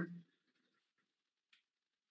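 The tail of a spoken word, then near silence with one faint click about a second and a half in.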